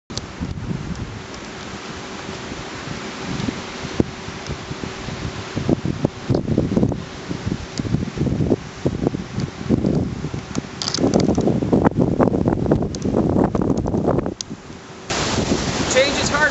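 Wind buffeting a handheld camera's microphone in uneven gusts, with irregular low thumps of handling. About a second before the end it cuts to a steadier rush of wind and surf at the water's edge.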